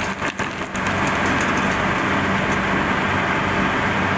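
Snack pellets frying in a pot of hot oil as they puff up. The sizzling is uneven for the first second, then steady and loud, over a faint low hum.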